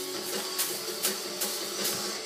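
Music playing from a television, with sharp rhythmic hits two or three times a second.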